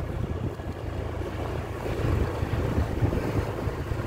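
Wind buffeting the microphone: an uneven low rumble that rises and falls, with a faint hiss above it.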